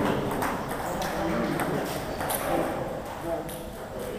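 Table tennis balls clicking off bats and tables in quick, irregular knocks from several rallies at once.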